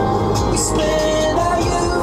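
Music playing through the Tesla Model 3's built-in audio system, heard inside the cabin while the car is being driven.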